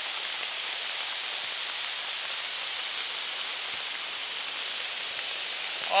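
Muddy floodwater rushing across a road as a torrent, a steady, even rush of water noise.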